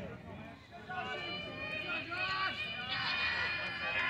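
Several voices calling out and talking over one another, with no clear words, in the pause before the pitch.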